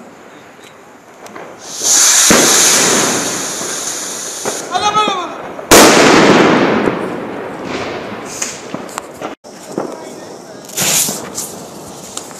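A ground firework goes off: a loud hiss for a few seconds, then one very loud bang with a long echo that fades over about two seconds. Near the end, another short hiss.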